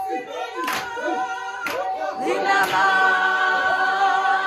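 Church congregation singing a cappella, several voices holding long notes together, with a hand clap about once a second.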